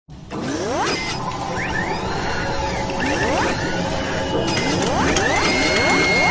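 Mechanical sound effects for an animated logo: a steady whirring and clattering texture with rising swooshes about every two seconds, and a held high tone near the end.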